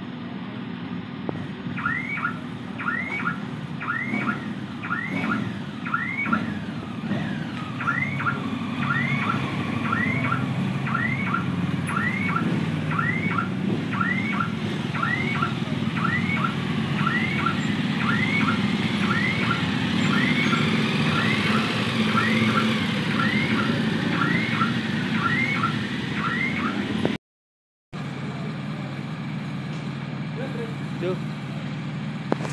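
A car alarm repeating a rising electronic chirp about once a second, over the low rumble of motorcycle engines running at low speed. The chirping stops abruptly at an edit near the end, leaving only engine sound.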